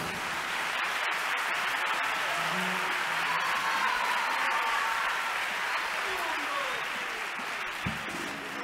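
Audience applauding steadily, with scattered shouts and voices over it, easing slightly near the end.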